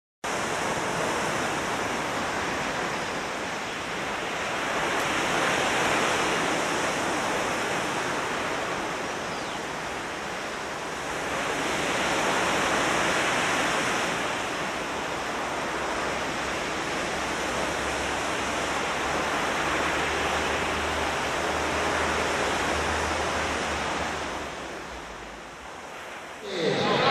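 Ocean waves breaking: a steady wash of surf that swells and ebbs about every seven seconds, with a low rumble joining in the second half and the sound fading near the end.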